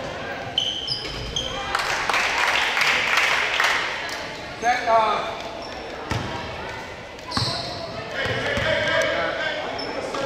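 Basketball bouncing on a hardwood gym floor amid spectators' voices echoing in the gym, with a few short high sneaker squeaks in the first second or so and a shout about five seconds in.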